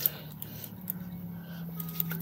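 Hands rubbing hand cream into the skin, faint, over a low steady hum.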